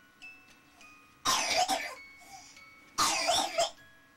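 A young child coughing twice, loudly, about a second and a half apart.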